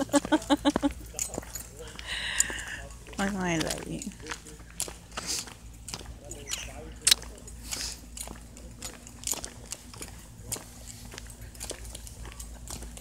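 Laughter, then irregular crunching footsteps through dry fallen leaves, with a short voice a couple of seconds in.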